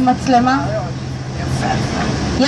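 A vehicle engine running with a steady low hum, heard under a voice that speaks for the first half second.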